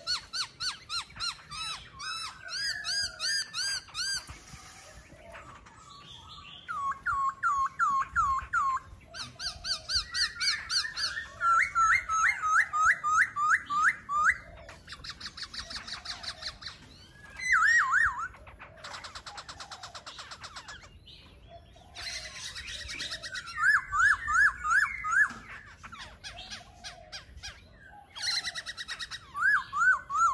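Caged laughingthrush singing: loud, varied phrases of rapidly repeated whistled notes, each run lasting a second or two, broken by short pauses.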